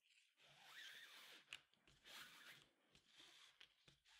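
Near silence, with the faint rustle of nylon paracord being pulled and handled and a small tick about one and a half seconds in.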